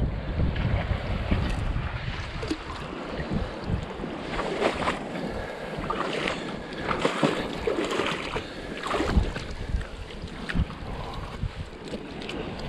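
Shallow seawater sloshing and splashing around rocks and hands in a rock pool, with scattered irregular knocks and clatters as stones are handled. Wind buffets the microphone, most in the first couple of seconds.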